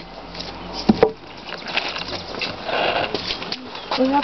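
Peeled ash log being lifted and set down onto a wooden block, with one sharp wooden knock about a second in, followed by smaller knocks and handling noises.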